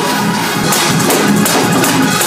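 Live gospel praise-break music from a church band: a fast drum kit with organ, thick with rapid percussion hits.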